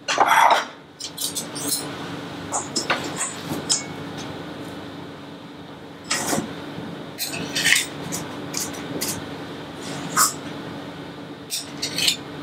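Metal spoons clinking and scraping against a stainless steel mixing bowl as thick cupcake batter is scooped out and spooned into muffin cups, with irregular clinks and scrapes throughout.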